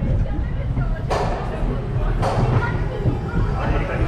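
Gerstlauer family coaster train running on its track with a steady low rumble, and two sudden bursts of hissing noise about a second apart, near one and two seconds in.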